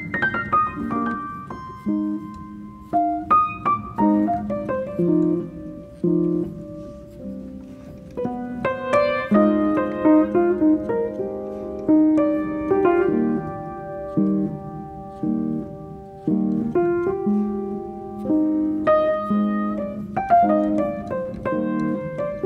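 Background piano music: single notes struck one after another over held chords.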